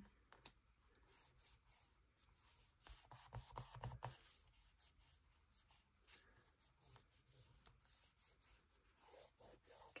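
Faint rustling and rubbing of paper and card as hands press and smooth a glued tag down onto a journal page, with scattered small clicks and a slightly louder patch of handling about three seconds in.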